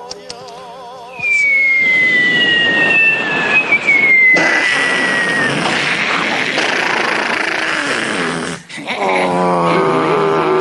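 Battle sounds mimicked by a comedian into a microphone. After a short wavering tone, two long whistles fall slowly in pitch over a loud rumbling roar, like shells dropping and exploding. Near the end the roar breaks off and a droning, engine-like hum starts.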